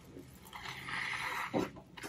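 A man blowing his nose into a paper napkin: one breathy blow lasting about a second, with a brief short sound just after. His nose is running from the very hot sauce he has just eaten.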